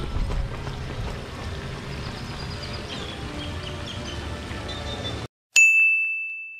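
Outdoor walking ambience with low wind rumble on the microphone and faint bird chirps. About five and a half seconds in it cuts out abruptly and a single loud bell-like ding rings out and slowly fades: a title-card sound effect.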